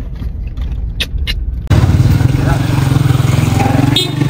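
Street traffic: a loud, steady engine hum with road noise that starts suddenly under half way through. Before it there is a quieter low rumble with two short clicks, about a second in.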